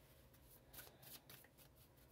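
Faint, light ticks and rustles of tarot cards being handled, a few small ones near the middle, over a near-silent room.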